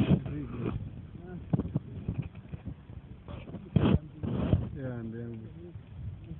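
Indistinct voices talking, with a few short sharp knocks.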